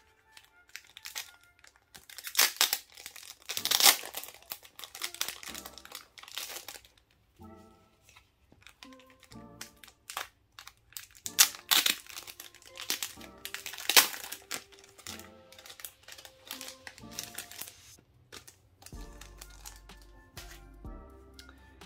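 Clear plastic sleeves of pocket-sized poca albums crinkling and tearing in hands in irregular bursts as the albums are unwrapped, loudest a few seconds in and again past the middle. Soft background music plays underneath.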